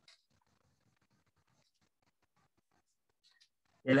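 Faint computer-keyboard typing: a loose scatter of soft key clicks.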